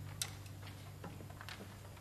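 Faint scattered clicks and small knocks from the orchestra stage, with a low held sound dying away underneath; a few sharp ticks come just after the start and a cluster about a second in.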